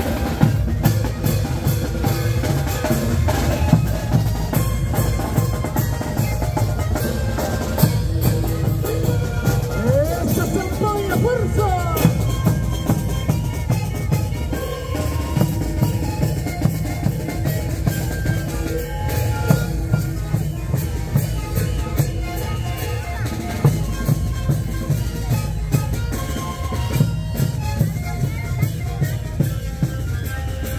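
Kantus band music: sikus panpipes played in unison over a steady beat of large bombo drums, with sharp drum strokes standing out regularly.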